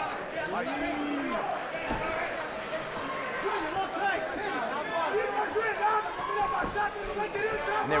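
Arena crowd: many voices talking and shouting at once in a steady din.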